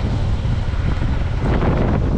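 Wind buffeting the microphone on a moving motorcycle, with the motorcycle's engine and road rumble running steadily underneath.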